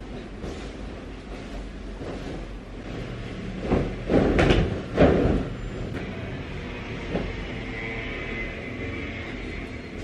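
White bed sheet and duvet rustling and flapping as they are shaken out and spread over a single bed, with a few loud swishes of fabric a little past the middle.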